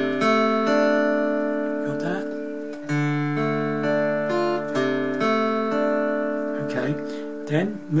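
Acoustic guitar picked one string at a time over a held D minor chord shape, each note ringing on under the next. A second group of picked notes, with a new bass note, starts about three seconds in.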